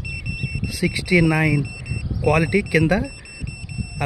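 SM999 satellite finder meter's beeper giving a continuous high-pitched tone, signalling that it has locked onto the satellite signal. A man talks over it.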